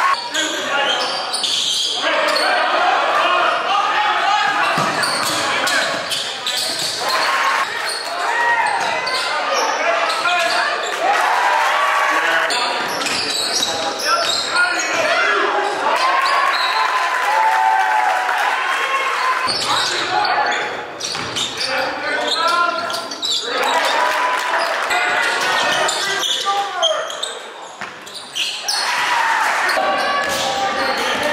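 Live game sound of high school basketball on an indoor court: the ball bouncing on the hardwood floor and players' and coaches' voices calling out.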